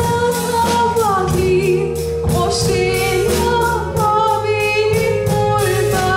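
A woman singing a slow Konkani tiatr song through the hall's PA, holding long notes with vibrato over a band backing of steady bass and a regular drum beat.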